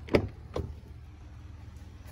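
A pickup truck's rear door being opened: a sharp latch click, then a second, softer knock about half a second later.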